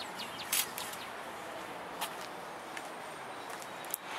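Outdoor ambience: a steady hiss with a few short, high bird chirps, the clearest about half a second in and another about two seconds in.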